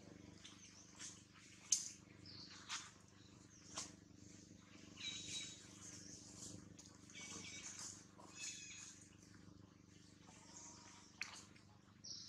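Faint, high-pitched animal chirps and squeaks, repeated irregularly, with a run of pitched calls in the middle and a few sharp clicks, the loudest early on.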